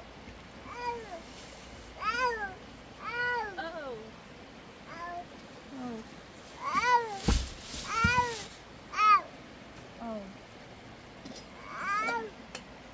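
A cat meowing over and over: about a dozen short meows, each rising then falling in pitch, roughly a second apart. About seven seconds in there is a brief rustle with a thump.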